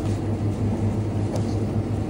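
Steady low hum of background machinery, with a faint click about one and a half seconds in.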